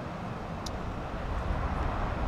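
Steady low rumble of outdoor traffic noise, slowly growing louder.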